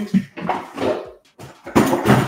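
A wooden box being handled and set down, the small knickknacks inside rattling, with a series of knocks and a louder clatter near the end.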